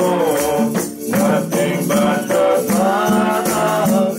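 Live gospel worship music: singing over keyboard and hand-drum accompaniment, with a steady rhythmic percussion beat.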